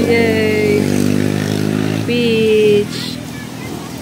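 A motor vehicle engine running steadily, cutting out about two and a half seconds in. Over it come two long, high, slightly falling tones, each under a second, about two seconds apart.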